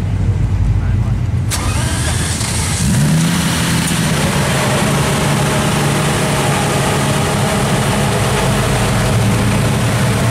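Lamborghini Diablo's V12 engine starting. A click about a second and a half in, then the engine catches about three seconds in, its note rising briefly before it settles into a steady idle.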